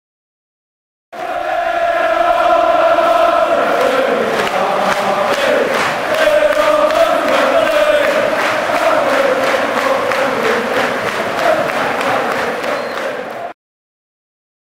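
Male voices chanting a football terrace song together, starting about a second in and stopping abruptly near the end.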